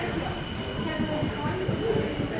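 Indoor shopping-mall background: a steady low rumble with faint chatter of distant voices and a thin steady high tone.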